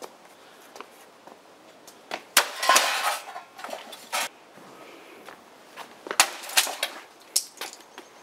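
A thick wooden branch smashing a toaster on stone paving: sharp cracks and clatters of plastic and metal breaking apart. The blows come in groups, a flurry about two and a half seconds in, one near four seconds, and more from about six seconds to near the end.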